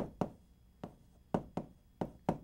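Chalk tapping against a chalkboard while words are written: about five short, sharp taps at uneven intervals.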